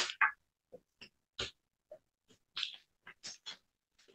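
About ten short rustles and clicks of handling noise, scattered unevenly, picked up by a courtroom microphone that cuts to silence between them.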